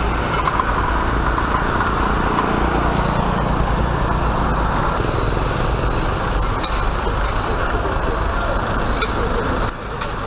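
Heavy sand-hauling dump trucks driving past: a steady low engine rumble with road and tyre noise.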